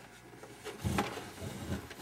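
Handling noise from the plastic-cased test instrument being turned over in the hands: low soft knocks, with one sharp click about a second in.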